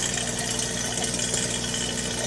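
An EcoPlus Commercial Air 1 electric air pump running with a steady hum, driving two Dewey Mister misters in a hydroponic bucket.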